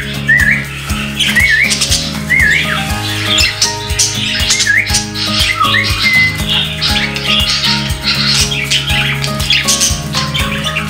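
Budgerigars chattering and squawking, with a few wavy whistled notes in the first half, over background music with a steady beat.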